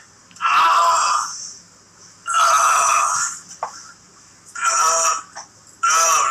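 A man's voice making drawn-out wordless groans, about four of them, each lasting around a second with short pauses between.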